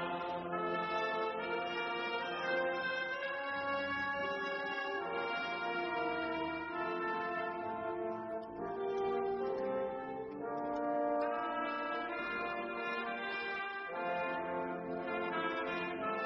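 Slow brass music: long held notes and chords that change every second or two.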